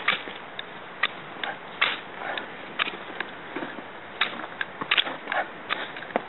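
Flint rod of a magnesium fire starter scraped again and again with a steel striker, throwing sparks onto magnesium shavings and tinder: about a dozen short, sharp, irregular scratches.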